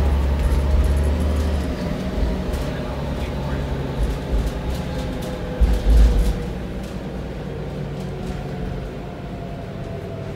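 Inside a 2000 Neoplan AN440A high-floor transit bus under way, its Cummins ISM diesel and Allison transmission running with a steady drone, low road rumble and a whine that slowly falls in pitch in the second half. A couple of heavy low thumps about six seconds in are the loudest moments.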